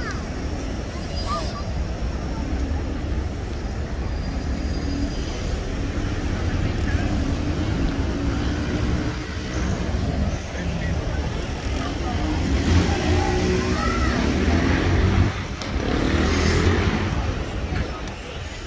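City street ambience: road traffic and bus engines give a steady low rumble, and passers-by talk, louder in the last few seconds.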